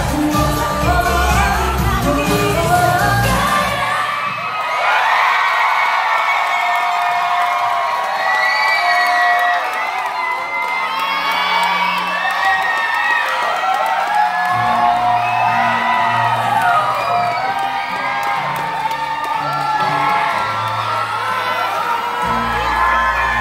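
Live pop music performance by a girl group, with singing over the backing track and an audience cheering and whooping. The bass drops out about four seconds in, leaving the vocals and upper parts, and comes back in about two-thirds of the way through.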